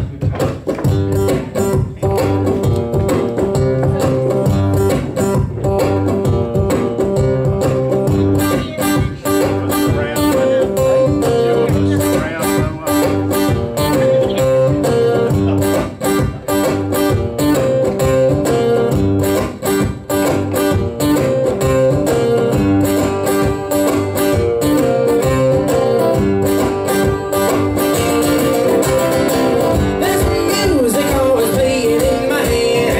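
Solo acoustic guitar playing a blues instrumental intro in a steady driving rhythm, with repeating bass notes under strummed chords.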